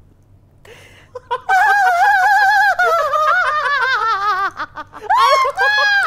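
A person's long, high-pitched wavering squeal in laughter, slowly falling in pitch, followed near the end by shorter squeals that rise in pitch.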